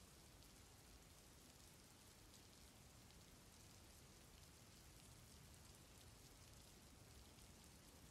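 Near silence: a faint, even hiss.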